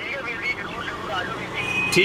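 Quiet speech: a man's voice, softer than the talk around it, with a steady high-pitched tone coming in near the end.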